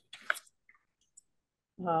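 A short click with a breathy rasp just after the start, then near silence, until a voice begins speaking near the end.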